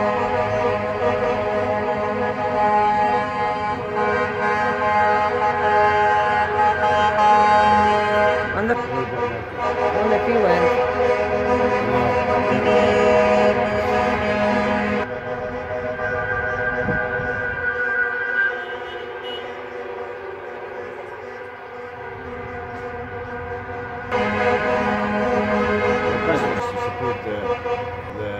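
Horns of a passing convoy of trucks and fire engines honking in long, overlapping held blasts, with a quieter stretch about two-thirds of the way through.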